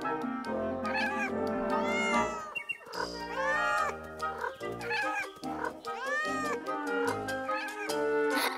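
Cat meowing several times over background music.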